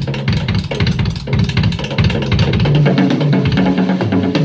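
Drum kit played live at a fast pace: a dense run of drum and cymbal strokes, with low pitched notes running underneath.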